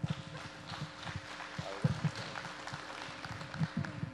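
A congregation applauding, with a few thumps of footsteps on a wooden stage.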